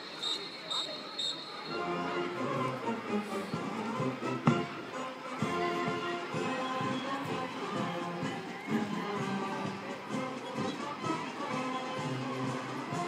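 Four short, high whistle blasts about half a second apart count off the marching band, which then starts a march with brass and drums, including a sharp loud hit about four and a half seconds in.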